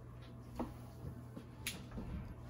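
Quiet eating sounds: a few short, sharp clicks and crunches of tortilla chips being chewed and handled, the sharpest about a second and a half in.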